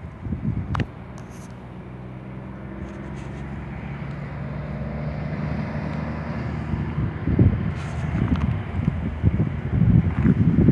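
Truck engine running steadily with an even low hum that slowly grows louder. Wind buffets the microphone in gusts over the last few seconds.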